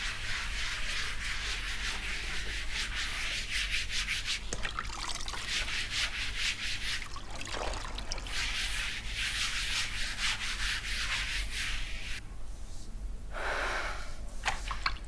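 A wet cloth rubbed hard back and forth across a floor: a steady rasping scrub in quick strokes. It breaks off briefly about halfway through while the cloth is wrung out over a plastic bucket, then resumes and stops a couple of seconds before the end.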